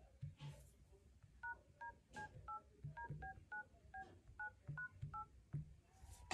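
Touch-tone keypad beeps from an Honor smartphone as a phone number is dialled: about eleven short two-note beeps, roughly three a second, with soft finger taps on the touchscreen.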